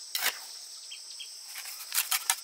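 A steel trowel scrapes wet cement mortar against a concrete block once just after the start, with a couple of faint ticks in the middle and sharp clicks near the end. A steady high insect chorus runs underneath.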